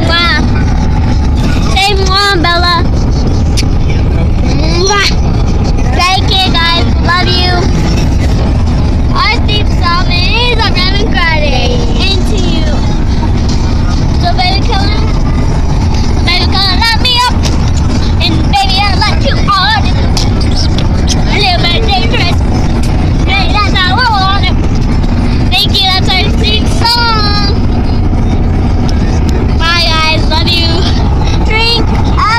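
Children's high-pitched voices chattering and squealing, rising and falling in pitch, over the steady low rumble of a car in motion, heard inside the cabin.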